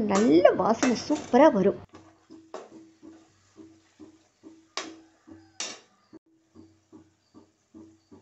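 Cooking sounds under faint music: a woman's voice for the first couple of seconds, then a soft low pulse repeating about twice a second. Three sharp knocks and scrapes of the spatula and steel bowl against the kadai come in the middle as masala powder is tipped in and stirred.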